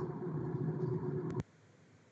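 Steady low background hum from an open microphone on a video conference call, cut off by a click about one and a half seconds in, after which the audio drops to dead digital silence.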